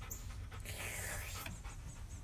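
A dog panting faintly, with one soft breathy rush about half a second in and fainter quick breaths after it.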